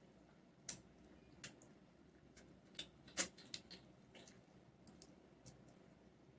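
Wet mouth clicks and smacks of people biting into and sucking ripe mango slices: about half a dozen short, scattered clicks over a quiet background, the loudest about three seconds in.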